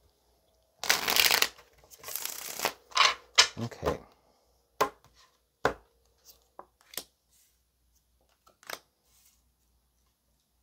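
A deck of tarot cards being shuffled. Two rasping bursts of shuffling are followed by several sharp card snaps, then a few light, scattered clicks as the cards settle.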